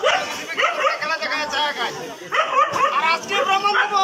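A performer's high-pitched voice giving short, yelping calls like a dog imitation.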